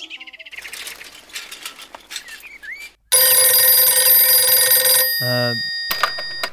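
Wall-mounted telephone ringing: one loud, steady ring of about two seconds, starting about three seconds in.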